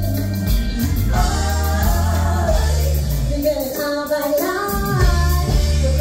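Live pop band playing loud, steady music with a woman singing lead into a microphone, backed by drum kit, bass and electric guitar; from about a second in, several voices sing together.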